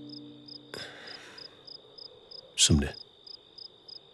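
Crickets chirping steadily, about three chirps a second over a constant high trill, as a night ambience. Held music notes end about three quarters of a second in, and near three seconds in a loud whoosh sweeps down in pitch, the loudest sound.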